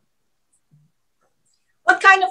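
Near silence: a pause in a video-call conversation. Near the end, a woman's voice starts speaking.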